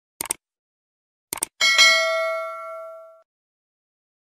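Subscribe-button animation sound effect: two short clusters of clicks, then a bell-like ding about a second and a half in that rings out and fades over roughly a second and a half.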